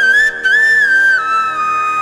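Devotional music: a flute melody with sliding, ornamented notes that settles into a long held note over a steady drone.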